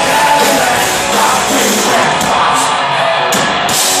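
Hard rock band playing live at full volume: electric guitar, bass and drums with a sung, shouted lead vocal, heard from within the audience.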